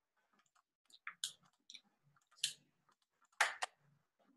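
A few scattered clicks and light knocks of small objects being handled close to a computer microphone. The loudest is a pair near the end.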